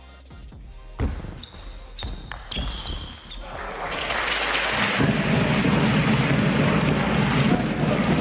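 Table tennis ball knocked back and forth, a few sharp hits on bats and table over about three seconds. Then the crowd cheers and applauds the point.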